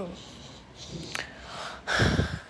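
A person's breath close to the microphone, with a single sharp click about a second in.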